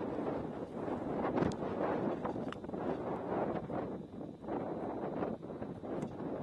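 Wind buffeting the microphone in uneven gusts, with two faint clicks in the first half.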